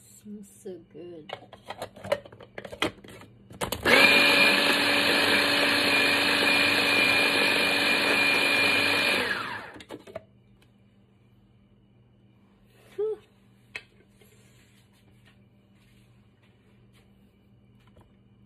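Small electric food chopper (Proctor Silex mini chopper) motor running in one steady burst of about five seconds while chopping black garlic and butter into a paste, starting about four seconds in and then winding down. A few clicks and knocks come before it.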